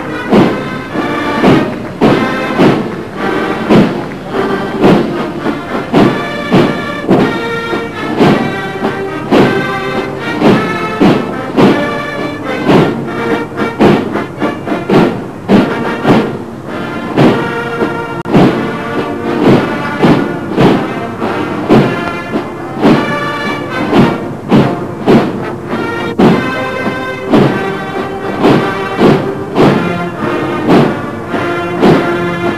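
Military band playing a march, with chords over a steady, heavy drum beat of about two strokes a second.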